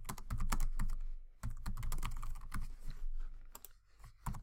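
Typing on a computer keyboard: a quick, irregular run of key clicks with a short break about a second and a half in, thinning out near the end.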